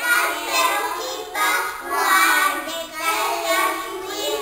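A small group of young children singing together in short phrases.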